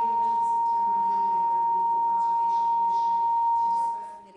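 A single steady, high-pitched ringing tone from the room's microphone and loudspeaker system feeding back. It holds level and dies away near the end.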